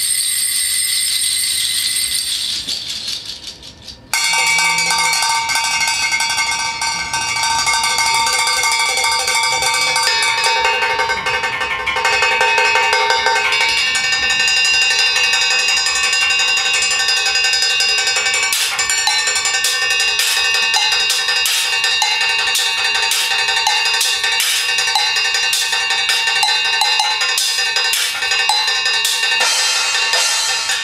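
Live metal percussion played by a drummer: a high shimmer fades out over the first few seconds, then many bell-like ringing tones sound and overlap. In the second half, sharp strikes come at a steady pace over the ringing.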